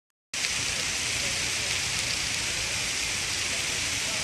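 Heavy rain falling on a swollen river: a steady hiss that starts abruptly a moment in.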